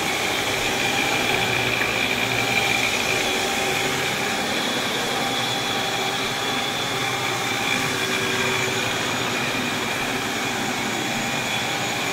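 Compact electric floor scrubber running steadily on a wet hardwood floor: a continuous motor drone with a faint high whine.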